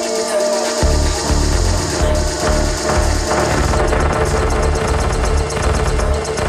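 Live electronic house music: the kick drum and bass are out briefly and come back in just under a second in, over a steady synth tone, with a fast high ticking pattern that gets busier about four seconds in.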